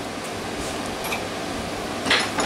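Steady fan-like background noise, an even hiss with no clear events.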